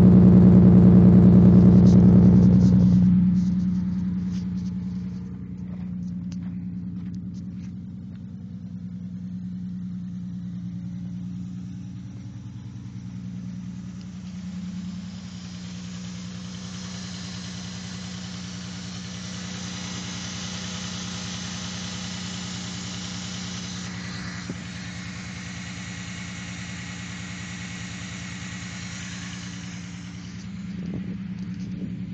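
2002 Chrysler Concorde engine idling steadily. It is loud for the first three seconds, then quieter and even, with a hiss building in the upper range from about halfway. The owner calls the idle a bit high and inconsistent and suspects a major vacuum leak.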